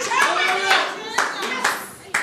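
Congregation clapping, with voices calling out over it; the claps are scattered and die down near the end.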